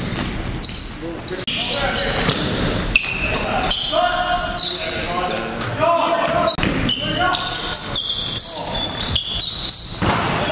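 Live game sound of a basketball bouncing on a gym's hardwood court, with short sharp knocks throughout and players' voices mixed in, echoing in the large hall.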